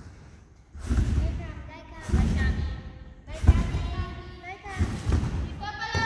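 Large gymnastics trampoline bed thudding under a gymnast's bounces, four low thuds at an even pace of about one every second and a third, as she builds height for a double front salto. Girls' voices are heard in the background.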